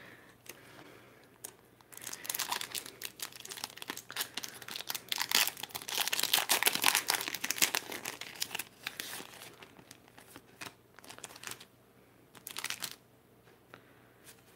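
Foil wrapper of a Pokémon trading card booster pack being crinkled and torn open by hand, with the crackling loudest in the middle stretch and a brief crinkle again near the end.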